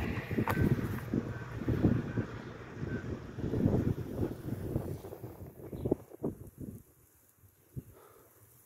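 Wind buffeting the microphone in irregular gusts, a low rumble that dies away about six seconds in.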